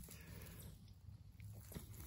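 Near silence: faint outdoor background, with a couple of faint ticks in the second half.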